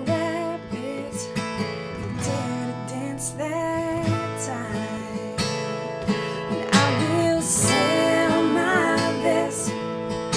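A woman singing a slow country ballad, accompanied by her own steadily strummed acoustic guitar.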